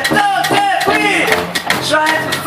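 Live rock band playing: a male lead voice sings over electric guitars and a drum kit.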